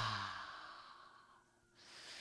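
A woman's deep sigh out through the mouth: the voiced tail falls in pitch and gives way to a long breathy exhale that fades out about a second and a half in. It is the deliberate release of a full yogic breath. A faint breath follows near the end.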